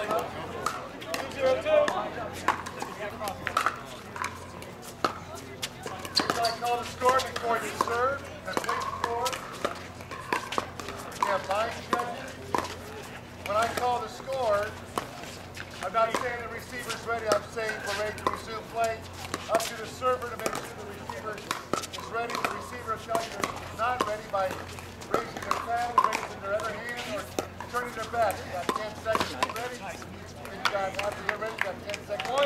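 Pickleball paddles striking a hard plastic ball in a rally, sharp pops coming at irregular intervals, over the chatter of spectators' voices.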